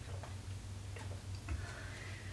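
A person taking sips of water: a few faint, irregular swallowing clicks over a low steady hum.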